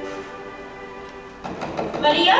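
A held chord of stage music slowly fading, then near the end a quick run of sharp knocks and clatter at a stage set's door.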